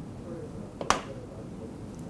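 A single sharp click about a second in, the interactive display's stylus being set down in its pen tray, over faint room tone.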